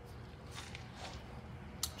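Quiet background with a steady low hum, faint rustling and one sharp click near the end.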